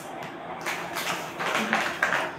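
Crinkly plastic chocolate bag rustling and crackling as it is handled and pulled open, in a run of crackles from a little over half a second in.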